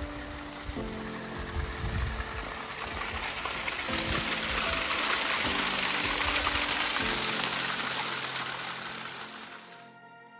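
Hot-spring water running down a mineral-crusted gully, a steady splashing hiss that grows loudest about halfway through and fades near the end, under background music with held notes.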